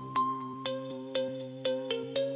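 Electronic background music: sustained synth notes with a steady beat about twice a second.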